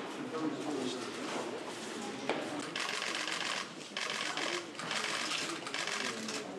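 Press camera shutters firing in rapid bursts of clicks, starting a little under halfway through and repeating several times, over a murmur of voices in a room.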